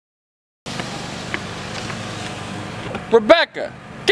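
Steady low hum of an idling car, starting after a moment of silence, with a brief shouted voice near the end.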